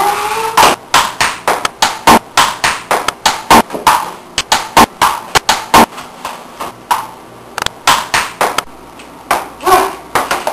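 A table-tennis rally: a ping-pong ball clicking sharply back and forth off paddles and table, about two or three hits a second. Play stops about six seconds in, then a few more hits come a little later.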